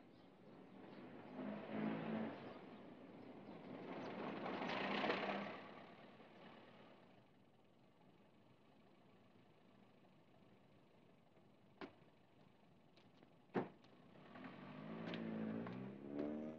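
Faint sound of a taxi car driving up and stopping, its engine noise swelling twice and then dying away. Several seconds later come two sharp knocks, a car door opened and then slammed shut.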